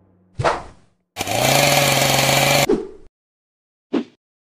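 Chainsaw sound effect: a short burst, then a chainsaw engine running at high revs for about a second and a half before cutting off suddenly. A brief click near the end.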